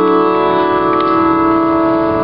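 Piano playing a single chord held steadily through the instrumental introduction of the song, with a faint note re-struck about a second in.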